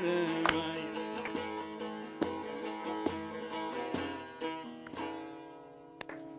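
Bağlama (long-necked Turkish saz) played solo in the instrumental close of a bozlak folk song: plucked metal strings with ringing, sustained notes that gradually fade away toward the end.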